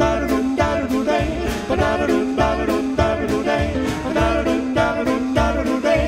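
Jazz band playing a swing tune with a steady beat and moving bass line.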